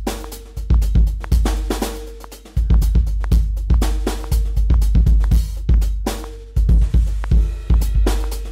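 Drum machine beat: a steady pattern of kick drum with a long deep boom, snare and hi-hat.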